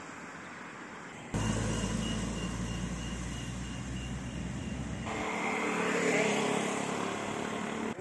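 A motor vehicle engine running steadily outdoors, cutting in abruptly about a second in. A few seconds later a louder rushing noise swells up and eases off toward the end.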